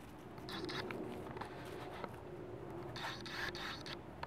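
Rustling and scraping of leaves and stems as a kitten scrabbles and pounces in garden plants, in short bursts, with a longer burst near the end; a person gives a brief laugh near the end.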